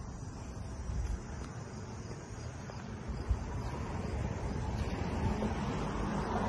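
Outdoor street ambience: a steady low rumble of wind on the microphone with faint distant traffic, and a single soft tap about halfway through.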